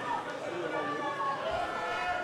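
Speech: a commentator's voice talking over football match footage.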